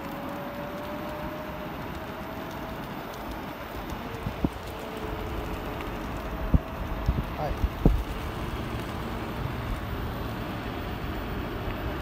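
Electric scooter picking up speed from about 11 to 16 mph: steady wind and tyre noise with a faint thin motor whine, and a few sharp knocks around the middle.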